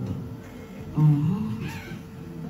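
A person's voice: one short drawn-out vocal sound about a second in that rises and then falls in pitch, like a wordless "hmm" or "eeh", over low room noise.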